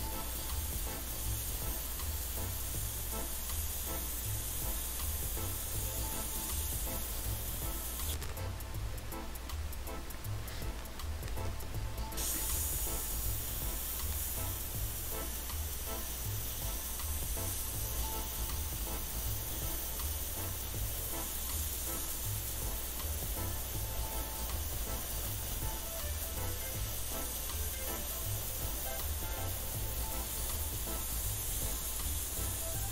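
Airbrush spraying red acrylic paint onto a cloth sneaker upper: a steady fine hiss of air and paint, over background music with a steady bass beat.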